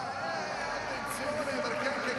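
Indistinct speech over a steady background of stadium noise.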